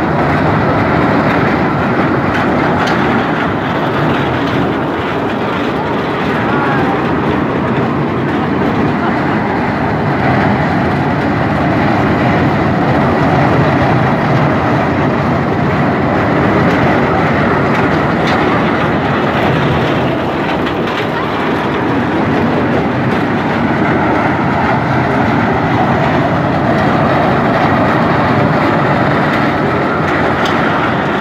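Steady, loud din of a funfair: ride machinery running, mixed with crowd voices.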